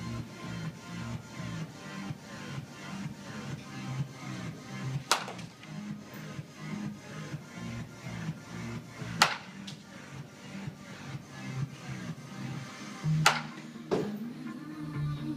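Background music with a steady beat, over which a baseball bat cracks against a ball three times, about four seconds apart, each a sharp hit off a soft toss.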